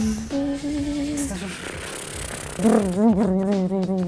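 A woman's voice humming in imitation of a vibration sander: held notes, then a fast-wavering buzz about two and a half seconds in.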